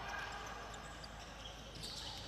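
Faint, steady ambience of an indoor futsal match in play: low background noise of the sports hall and its crowd.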